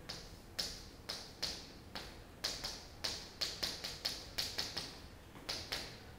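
Chalk tapping and clicking against a chalkboard while writing numbers: a string of sharp, irregular taps, coming most quickly in the middle.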